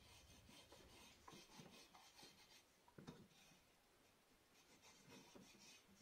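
Faint scratching of a pencil point on wood as a homemade wooden marking gauge is slid along a board to scribe a line, with the gauge's wooden fence rubbing against the board's edge. The strokes run for the first few seconds, ease off in the middle and pick up again near the end.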